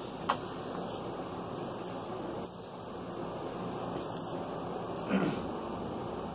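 Steady hum of a window air conditioner running in a small room, with a few light knocks and a soft thump about five seconds in as someone sits down.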